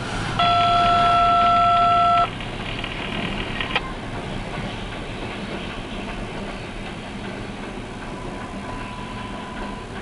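Western Maryland 1309, a 2-6-6-2 Mallet steam locomotive, working a freight train with a continuous low sound from its running. A loud steady tone cuts in sharply about half a second in and stops about two seconds later, and there is a click just under four seconds in.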